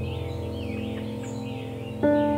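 Soft background music, a held chord slowly fading, with birds chirping in quick rising and falling calls over it.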